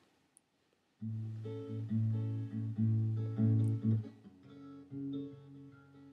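Acoustic guitar playing a song's opening, starting about a second in after a brief silence and growing softer for the last two seconds.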